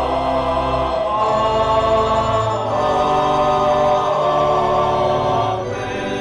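Church choir singing slow, long-held chords as the sung response to the pastor's blessing. The chord changes about three times.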